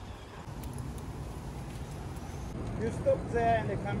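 Steady low outdoor rumble, like distant traffic, with a voice coming in about three seconds in.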